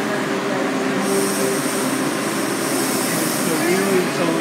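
Washington Metro Kawasaki 7000-series subway train pulling into the station and braking to a stop, with a high hiss from the wheels and brakes starting about a second in. Voices of waiting passengers carry on underneath.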